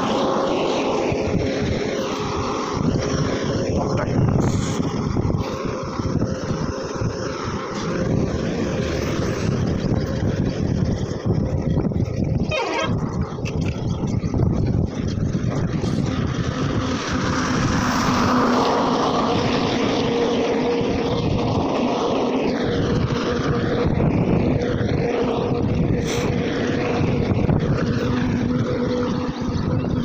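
Wind rushing over the microphone of a phone riding on a moving bicycle, mixed with the noise of highway traffic, including trucks. A steady low drone runs through it and grows plainer in the second half.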